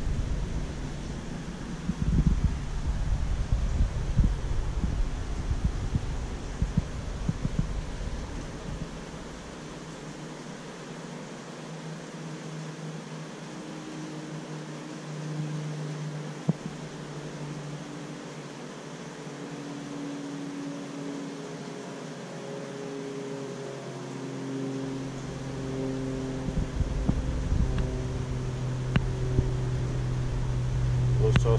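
Steady mechanical hum with low rumbling, heavier for the first several seconds and again near the end; a few faint held tones sound in the quieter middle stretch.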